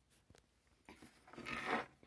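Handling noise on a workbench: a few light clicks, then a scraping, crunching rustle lasting about a second that grows louder near the end.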